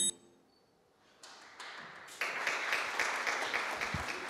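Clapping from a small audience begins about a second in and quickly grows into steady applause.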